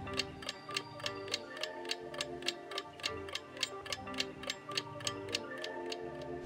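Countdown-timer sound effect: fast, even clock ticking over soft background music.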